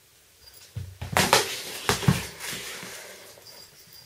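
A handful of sharp knocks and rustling handling noise, clustered between about one and two seconds in, then fading away.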